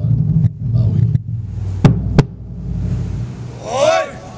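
A steady low rumble over the show's sound system, broken by two sharp knocks about two seconds in, then a voice calling out near the end.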